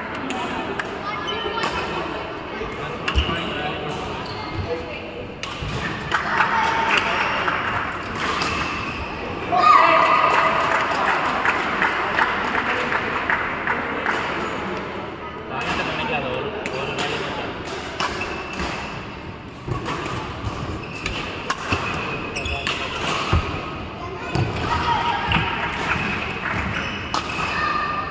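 Background voices of players and spectators in a large indoor badminton hall, with scattered short thuds and knocks of feet and shuttlecock strikes on the courts.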